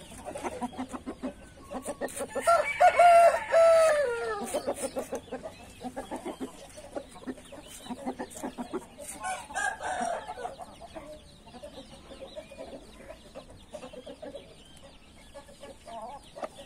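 A rooster crowing once, a short crow of under two seconds about two and a half seconds in, with hens and roosters clucking around it and a fainter call near ten seconds.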